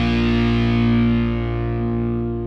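A held, distorted electric guitar chord ringing out and slowly fading, its brightness dying away first: the closing chord of a hard rock song.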